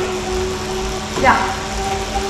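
Direct-drive indoor bike trainer running with a steady hum and low rumble as the rider pedals.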